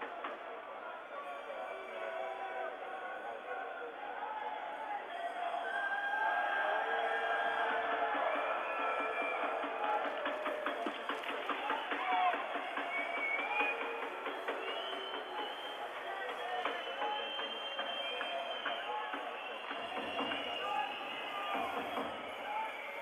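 Ice hockey arena crowd chanting and singing, many voices on held, wavering notes that swell a few seconds in. Scattered sharp clicks of sticks and puck on the ice come through mid-play.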